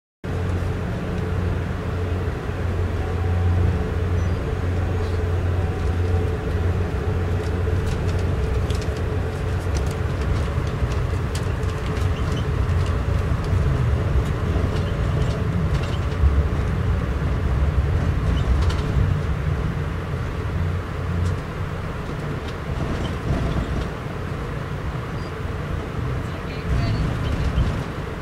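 Amtrak Downeaster passenger train heard from inside an Amfleet I coach, rolling slowly out over the station tracks. A steady low rumble runs throughout, with a faint hum in the first half and scattered light clicks from the wheels on the rails near the middle. The rumble eases slightly near the end.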